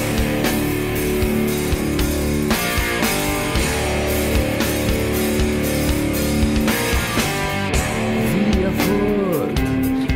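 Instrumental break in a rock song: guitar held over a regular drum beat, with notes sliding up and down in pitch near the end.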